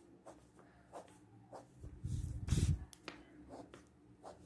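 Pencil drawing lines on a sheet of paper: short scratchy strokes and light taps, with a louder, dull rustle of the paper being handled about two seconds in.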